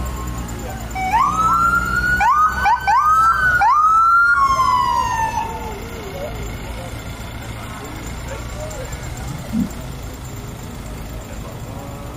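Police SUV siren sounding a quick string of short rising whoops, about five in a row, then one longer falling wail that dies away about halfway through.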